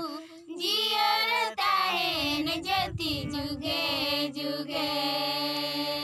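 A high voice singing a melodic devotional song in long held notes, over a steady drone accompaniment.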